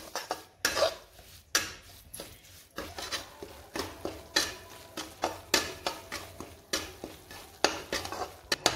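Flat metal spatula scraping and stirring semolina roasting in ghee in an aluminium kadhai, in short rhythmic strokes about two a second.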